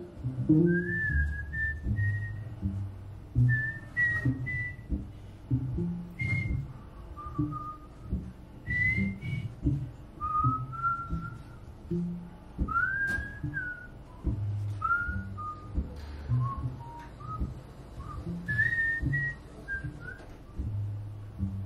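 A man whistling a blues melody into a microphone in short, gliding phrases, over his own electric guitar picking low notes beneath.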